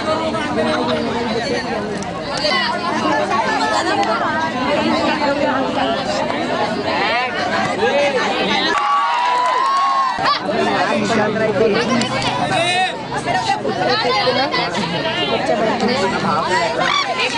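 Crowd of spectators shouting and chattering, many voices overlapping without a break.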